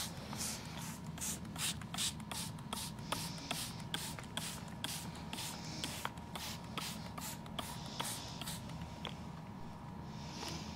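Plastic trigger spray bottle squirted rapidly and repeatedly onto citrus leaves, short hissing squirts at about two to three a second, stopping about a second before the end.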